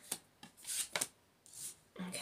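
Tarot cards being handled and laid out on a wooden tabletop: four short rustles and soft slaps of card against card and table.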